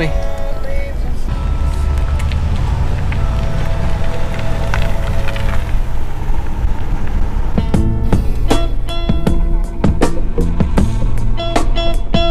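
Steady low rumble of a truck driving along a road. About two-thirds of the way through, background music with plucked guitar notes comes in.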